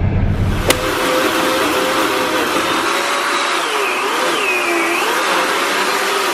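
Small corded electric trimmer's motor running steadily, starting about a second in, its whine sagging in pitch and recovering a few times as it cuts into growth at ground level.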